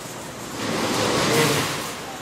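A rush of air noise that swells about half a second in, is loudest past the middle and fades toward the end.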